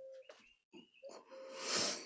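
A person's audible breath drawn in, swelling over about half a second near the end, after a nearly silent pause.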